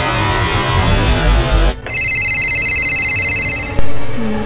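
Loud music cuts off abruptly a little before halfway. A mobile phone ringtone follows, several high electronic tones pulsing rapidly, for about two seconds before stopping suddenly.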